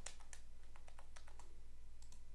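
Computer keyboard keys being typed in quick, irregular taps, faint against a low steady hum.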